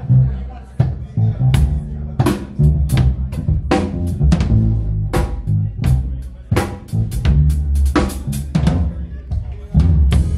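Live band groove of electric bass guitar and drum kit: a deep, driving bass line under a steady beat of kick and snare hits, about two to three strokes a second.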